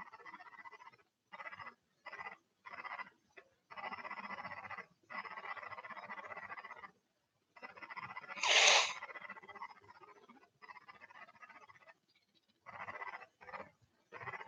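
Faint breathing and mouth noises close to a microphone, switching on and off in short irregular patches with a faint steady whine. About eight and a half seconds in comes one short, loud sniff from a congested nose.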